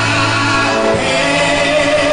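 Live gospel worship song sung by men's voices through a microphone, with acoustic guitar.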